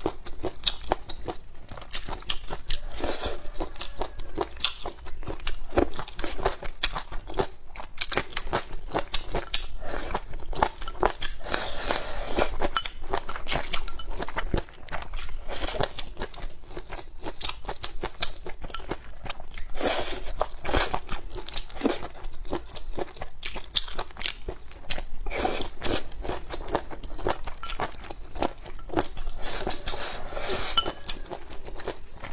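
Close-miked chewing of cold-dressed tilapia fish skin rolls, a dense run of crisp crunching and crackling bites that goes on without a break.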